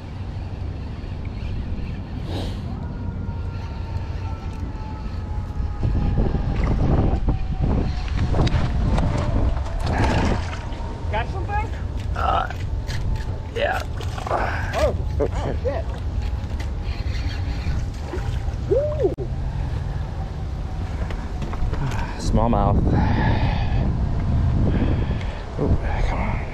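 Low rumble of wind on the microphone, with indistinct voices in bursts about ten seconds in and again near the end.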